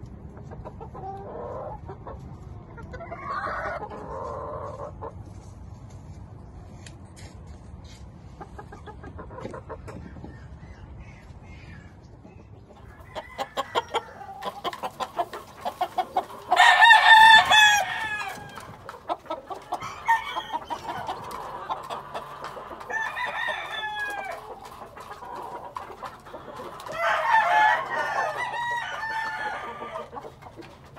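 Gamecocks (roosters) crowing several times, with the loudest crow about halfway through and more crows toward the end, and clucking in the first few seconds. A run of quick clicks comes just before the loudest crow.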